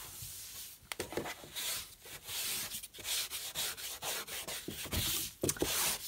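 A cleaning wipe rubbed back and forth over a shoe rack shelf, in quick scrubbing strokes about two a second.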